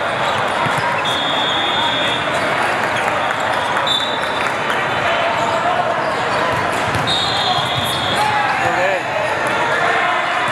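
Din of a busy indoor volleyball hall with many courts in play: crowd and player voices and volleyballs being hit and bouncing on the floor, echoing in the large room. Referee whistle blasts, each about a second long, sound about a second in, around four seconds and around seven seconds.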